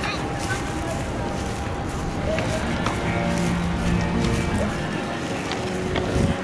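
Voices of people talking close by, mixed with music with steady held notes.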